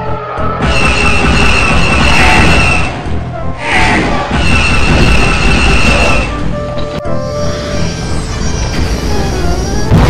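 Dramatic background music under science-fiction battle sound effects: two long, loud rushing passes with a steady high whine, like fighter craft flying past, the first about a second in and the second around the middle.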